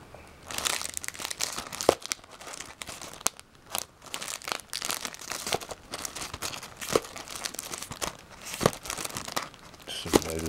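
Crinkling and rustling plastic packaging of sleeved trading-card booster packs being handled and shuffled in a box, with a few sharp clicks as packs knock together.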